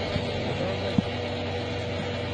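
Mobile crane's diesel engine running steadily while it hoists a car, with a single sharp knock about a second in.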